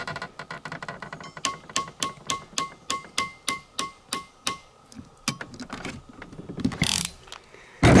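Ratcheting PEX cinch clamp tool clicking as its handles are squeezed to close a cinch clamp on PEX tubing: about a dozen quick ratchet clicks, roughly four a second, each with a short metallic ring. A couple of louder clacks follow near the end.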